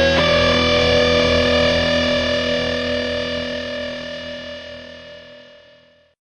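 Melodic rock instrumental closing on a final distorted electric guitar chord, struck just after the start and left to ring out, fading steadily away to the end of the track.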